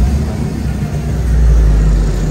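A deep low rumble with no clear pitch, swelling about a second in and easing near the end.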